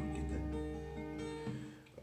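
Acoustic guitar in standard tuning with a capo at the sixth fret, fingerpicked: a few plucked notes start one after another and ring over each other, then fade out near the end.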